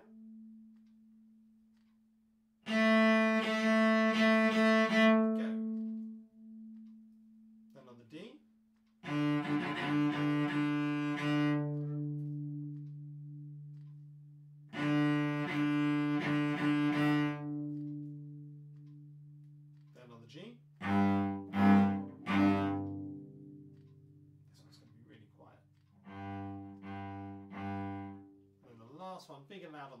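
Solo cello playing short bowed warm-up phrases on the A string. The first phrases are long held notes; quicker repeated short notes follow in the second half. Each phrase is separated by a pause of a few seconds.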